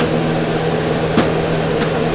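A steady background hum made of several even tones, with a faint tap about halfway through as toy wrestling figures are handled in a plastic toy ring.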